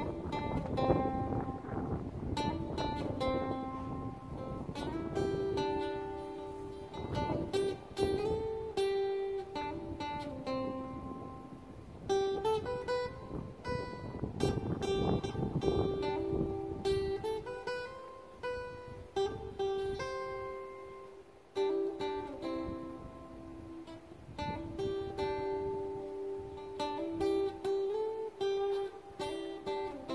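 A small live band of keyboard, electric guitars and strummed acoustic guitar playing an instrumental passage, with a melody of held notes stepping up and down.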